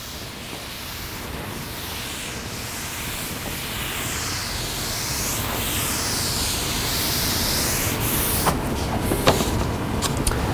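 A sponge rubbing across a chalkboard in repeated sweeping strokes, growing louder as it goes. A couple of sharp knocks come near the end.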